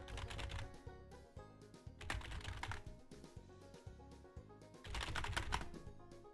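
Computer keyboard typing in three short bursts, at the start, about two seconds in and about five seconds in, over background music with a steady beat.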